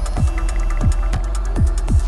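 Techno playing in a DJ mix: a deep kick drum whose pitch drops on each hit, over a steady sub-bass hum, with sparse hi-hat ticks.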